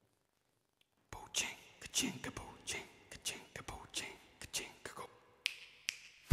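A man whispering close to the microphone: a string of short, breathy syllables starting about a second in.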